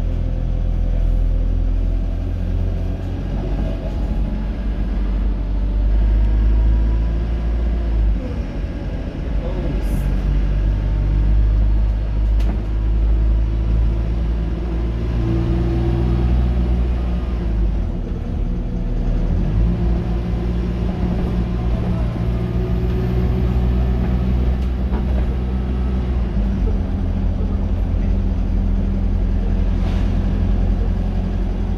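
Dennis Dart SLF single-deck bus engine running under way, heard from inside the passenger saloon near the back: a steady low rumble whose note shifts up and down in pitch several times as the bus pulls away and changes speed.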